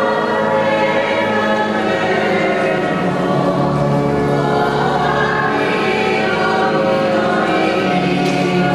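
Choir singing in sustained, held chords at a steady level.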